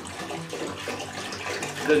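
Water poured from a plastic gallon jug into a stainless steel pot, a steady splashing stream.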